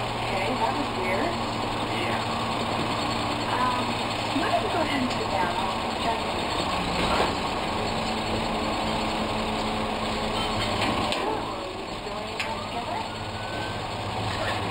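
A BFI automated side-loader garbage truck's diesel engine idling steadily.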